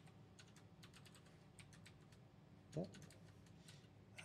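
Typing on a computer keyboard: a quick, irregular run of faint keystrokes.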